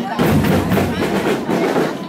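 Marching-band drums and percussion of a school fanfarra playing in a street parade, over the chatter of a crowd.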